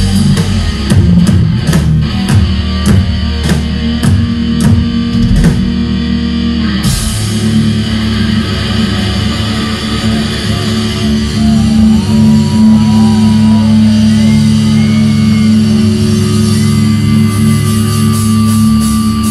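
Live thrash metal band playing loud, distorted electric guitars over a drum kit. The drums hit steadily for about the first seven seconds, then stop suddenly. After that a held chord rings on, with a few bending, gliding notes over it.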